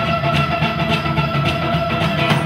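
Live folk-rock band playing: acoustic guitar strummed in a steady, driving rhythm under a long held high note, with drums.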